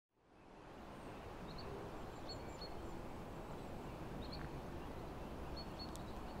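Quiet open-air ambience fading in over the first half second: a steady low background rumble with a few short, high bird chirps scattered through.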